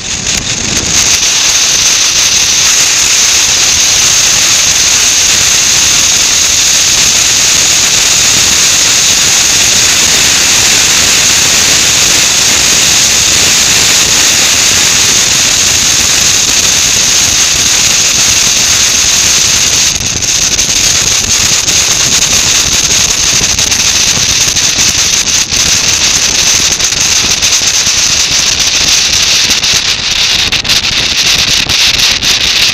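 Loud, steady rush of wind over a camera mounted on a moving motorcycle at road speed, covering any engine sound.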